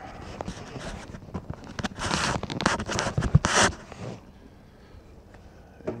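Handling noise from the camera as it is set down on a tabletop: rustling and scraping with scattered clicks, two loud scraping bursts in the middle, then it goes quiet.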